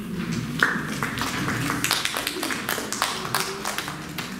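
Audience applauding, a loose patter of separate hand claps.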